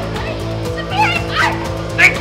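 Dramatic background music with a steady low drone, and short, high wordless cries from a woman about a second in.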